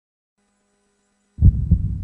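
Two deep, heavy bass thumps in quick succession, like a heartbeat, over a low steady hum, starting suddenly about a second and a half in after near silence.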